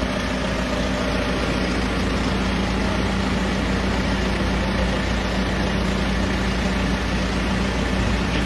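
A steady mechanical drone with a constant low hum and rumble, unchanging throughout.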